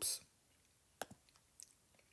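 Light taps on a tablet touchscreen: one sharp click about a second in, then a few fainter ticks, all at low level. The very end of a spoken word is heard at the start.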